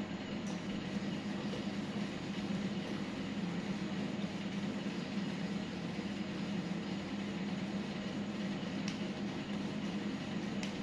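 Steady low mechanical hum with a light hiss, unchanging throughout, with a faint click near the end.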